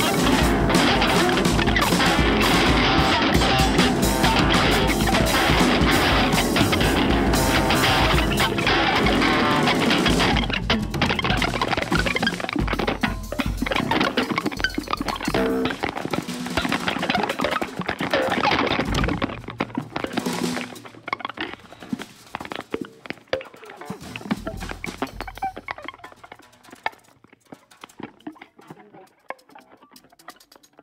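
Improvised jazz duo of electric guitar and drum kit playing together, dense and loud at first, then thinning out. From about twenty seconds in it turns sparse, with scattered guitar notes and light drum strokes, dying away toward the end.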